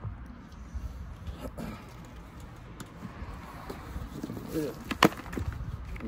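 Handling noise from a phone being set in place: low rustling and rumbling with a few faint clicks, then one sharp knock about five seconds in.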